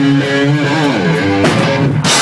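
Electric guitars playing a loud live rock riff, the notes sliding up and down.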